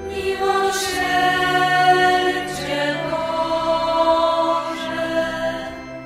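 A choir singing a slow devotional chant in long held notes, the melody moving in steps every second or two, with soft consonants between the notes.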